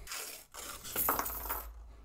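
A paper-wrapped roll of US nickels being torn open, and the cupronickel coins spilling out and clinking together onto a hard tabletop.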